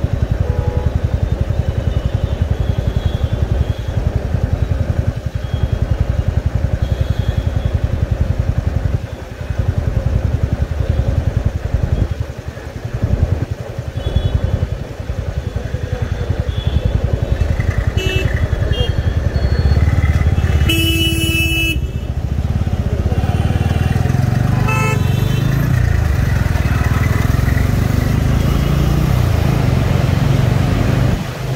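A motorcycle engine running in stopped city traffic, with other vehicles honking. A loud horn blast lasts about a second a little past two-thirds of the way in. The low engine and road noise then rises as the bike pulls away.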